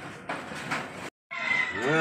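A man's voice in a long, drawn-out call that slides up and then down in pitch, starting after a short break about halfway in. Before it there is a low background rumble with a couple of soft knocks.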